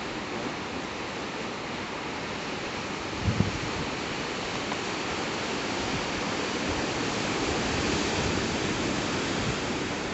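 Ocean surf breaking on a rocky shore below, a steady wash of noise that swells a little in the second half. A brief low thump comes about three seconds in.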